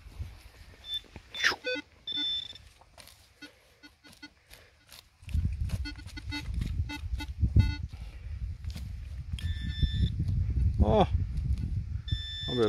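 Metal detecting pinpointer probed into loose soil, beeping as it closes on a buried target: short high beeps and chirps at first, quick pulses in the middle and a steady run of high beeps near the end. A low rumbling noise runs underneath from about five seconds in.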